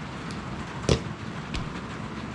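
Snap on a nylon knife sheath's retaining strap clicking shut once, about a second in, followed by a softer knock, over a steady background hiss.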